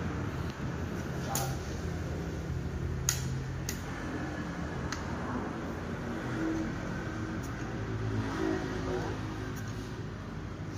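A rifle being handled, giving a handful of sharp clicks, the loudest about three seconds in, over low murmuring voices and a steady hum.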